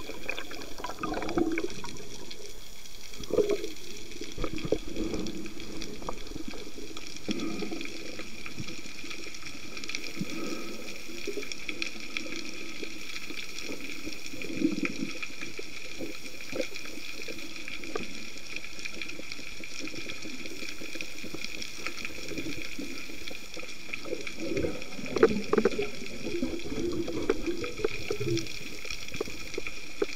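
Underwater sound picked up by a camera in a waterproof housing: a steady hiss with irregular muffled low rumbles and bumps of moving water, and a few sharp clicks about 25 seconds in.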